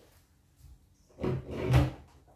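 Handling noise of objects being moved: two short, loud scraping knocks a little over a second in, the second the louder.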